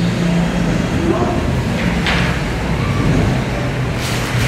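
Indistinct, murmured conversation over a steady low rumble, with a short rustle about two seconds in.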